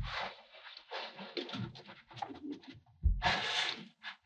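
A metal meat-tenderizer mallet pressed and dragged into kinetic sand, the sand crunching and crumbling in short bouts. A soft thud comes at the start, and a louder crunch with a low thump begins about three seconds in.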